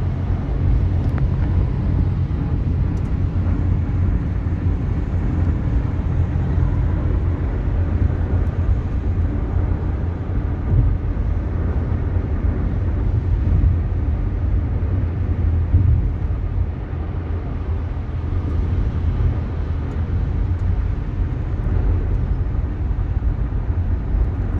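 Car driving at freeway speed, heard from inside the cabin: a steady low rumble of tyres and engine.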